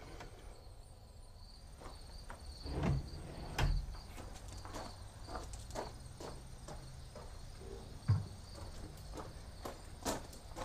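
Crickets chirping in a steady high trill, with a few dull knocks and thumps of handling, about three seconds in, shortly after, and near the end.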